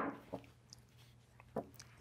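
Wooden chess pieces knocking as they are picked up and set down during an exchange: one sharp clack at the start, then a few faint light clicks.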